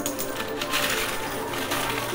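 Background music playing, with scattered clicks of quarters knocking and sliding against each other on a coin pusher machine's playfield as the pusher shelf pushes them.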